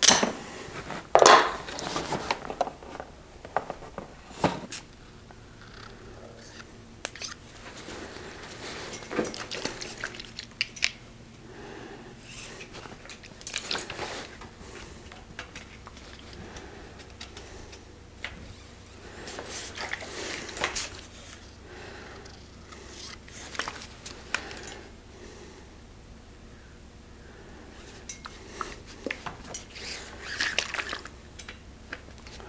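Bike workshop handling sounds: a sharp snip of cable cutters through shift-cable housing about a second in, then scattered metallic clinks, clicks and rustles as cables and housing are handled and fitted on the bike frame.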